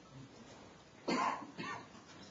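A person coughing twice, about half a second apart, in the second half.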